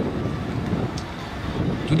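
Steady low rumbling background noise of an outdoor gathering, with no single clear source standing out.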